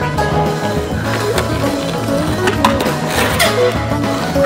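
Background music with a skateboard's wheels rolling on asphalt and several sharp clacks of the board, about a second in and again past the three-second mark.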